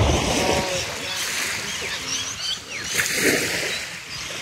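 Beach ambience: a steady hiss of wind and gentle surf, with birds chirping in short whistled calls throughout.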